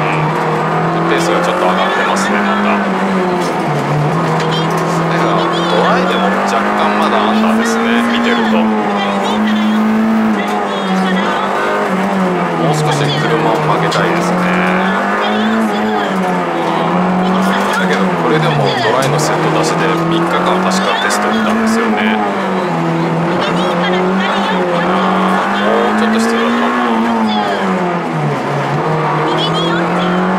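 Honda Integra Type R (DC2) four-cylinder engine running hard, heard from inside the cabin, its pitch rising and falling again and again every couple of seconds as the driver accelerates and lifts between corners on a rally stage.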